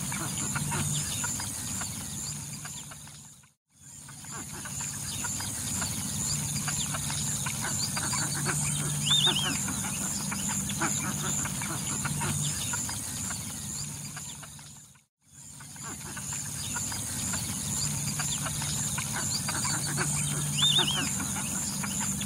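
Birds calling over a steady high hum, in a looped recording. Twice the sound fades out to silence and back in, and the same passage repeats each time.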